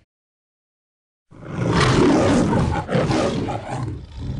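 A cat growling: a long, noisy growl that starts after a little over a second of silence.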